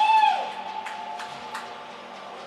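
Spectator whooping in an ice rink after a goal: a single call that rises and then holds for about a second and a half, with scattered faint clicks around it.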